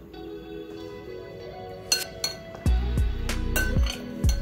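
Metal spoon clinking and knocking against a glass mixing bowl as a chopped bean-and-vegetable salad is stirred. A few sharp clinks start about halfway through, then come more often near the end, over background guitar music.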